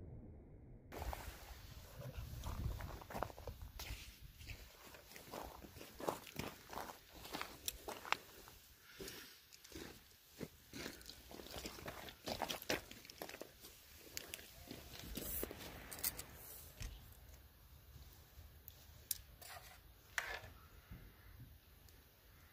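Faint footsteps crunching on gravel, mixed with irregular clicks and rustles of handling close to the microphone.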